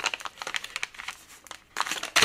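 Clear plastic resealable bag crinkling as hands handle it while trying to get it open, with a louder crackle near the end.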